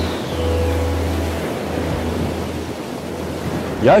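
Surf breaking and washing over a rocky shoreline, a steady rush of water. A deep bass note and a falling electronic sweep from the soundtrack fade out within the first two seconds.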